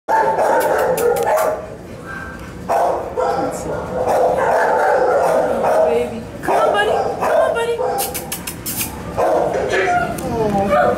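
Many dogs barking and yipping at once in shelter kennels, a near-continuous din with a brief lull about two seconds in. A few sharp clicks near the end.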